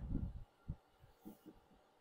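A few soft, dull low thumps in the first half second, then two brief faint knocks.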